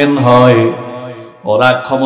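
A man's voice preaching in a melodic, chanted delivery into microphones. He holds a long low note, lets it trail away to a brief pause about one and a half seconds in, then starts the next chanted phrase.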